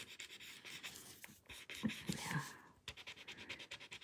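Faint scratchy rubbing of a shading tool worked in small strokes over a paper tile.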